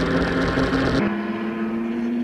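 Sprint Race touring car engine heard onboard, holding a steady note under a broad hiss on the wet track. About a second in, the sound cuts to a quieter, steadier engine note from trackside.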